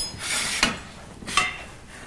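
Cutlery clinking and scraping against a plate while salad is served: a sharp clink with a short ring at the start, then lighter knocks about two-thirds of a second and a second and a half in.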